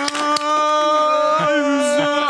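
A single voice holding one long, steady vocal note, with a slight dip in pitch near the end.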